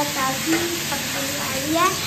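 Food sizzling in a frying pan as it is stirred with a metal spatula, with a few short bits of a voice over it, the loudest rising near the end.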